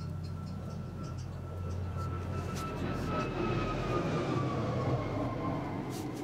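An aircraft flying past: a steady whine that slowly falls in pitch while the rumbling noise swells toward the middle and then eases off.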